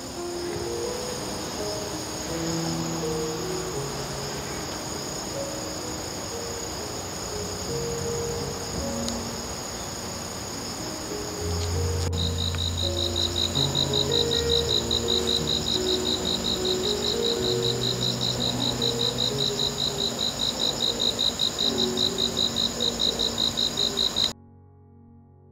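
Insects singing in a late-summer garden: steady high trills, joined about halfway by a louder, evenly pulsing cricket-like chirp of about four pulses a second.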